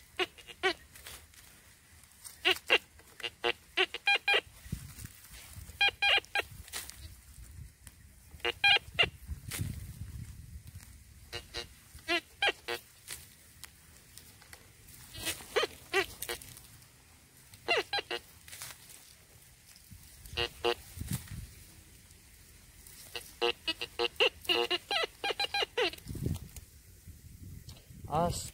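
Metal detector's signal tone sounding in short clusters of pitched beeps every couple of seconds as the coil sweeps back and forth, pinpointing a buried target that turns out to be an old pair of jeans.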